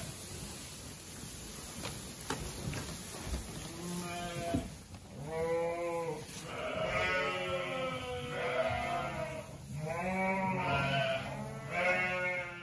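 Sheep bleating in a barn of ewes and young lambs. The first few seconds are quieter, then from about four seconds in comes a run of bleats, some long and some overlapping.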